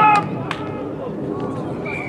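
A spectator's loud shout right at the start, then scattered voices of onlookers with a few sharp claps or knocks. Near the end a referee's whistle begins one long steady blast.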